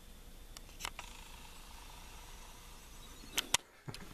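Quiet room tone with a few faint clicks, then two sharper clicks close together near the end, followed by a brief drop to near silence.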